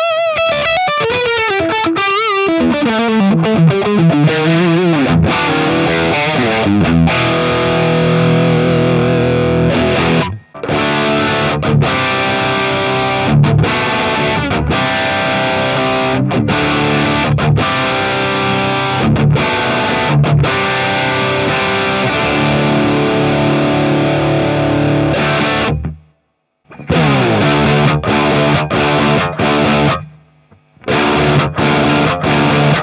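Electric guitar played through a Synergy IICP preamp module, which models the Mesa/Boogie Mark IIC+ amp, with high-gain distortion: a few seconds of single-note lead lines with vibrato and bends, then dense distorted chord riffing. The playing breaks off briefly about ten seconds in and stops for about a second near the end.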